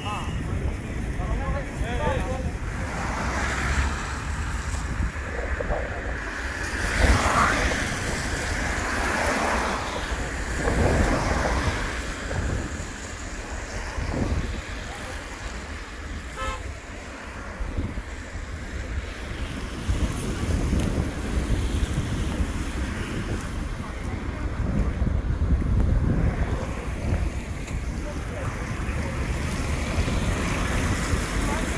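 Wind buffeting the microphone as a constant low rumble that swells and eases, over the noise of road traffic and scattered voices.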